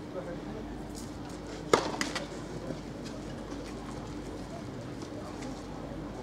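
A tennis racket striking the ball once, a sharp loud knock just under two seconds in, followed by two lighter knocks, over a steady low hum.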